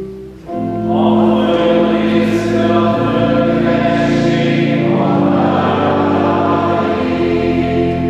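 Choir singing in a church, held sustained notes; after a brief drop in sound the voices come in strongly about half a second in and carry on steadily.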